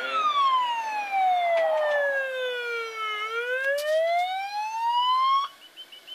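Ambulance siren on its slow wail: one long fall in pitch over about three seconds, then a rise, switched off abruptly near the end.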